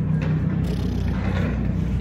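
Steady low rumble of city street noise, traffic mixed with wind buffeting the phone's microphone.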